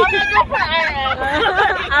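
Women's voices talking over each other, lively and overlapping, with a low outdoor rumble underneath.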